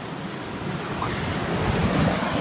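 Surf washing onto the beach, with wind buffeting the phone's microphone; the noise swells a little toward the end.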